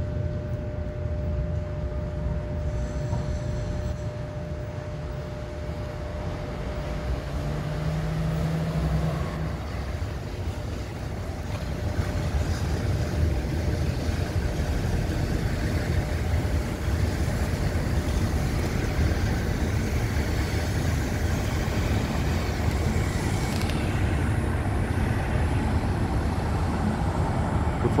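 Korail Mugunghwa-ho train 9055 pulling into a station platform: a steady low rumble of engine and wheels on the rails that grows louder about twelve seconds in as the train draws alongside.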